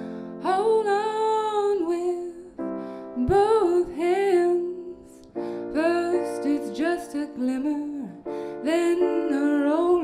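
A woman singing a slow original song to her own Yamaha grand piano accompaniment, the voice in four phrases with short breaks between, over held piano chords.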